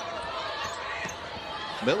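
Arena sound during live basketball play: a steady background noise of the crowd and hall, with a few faint ball bounces on the hardwood court.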